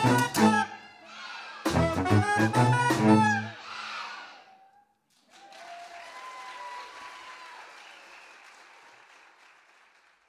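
Live band music led by saxophones over percussion plays its final phrases and dies away about four or five seconds in. A fainter, noisy stretch follows and fades out.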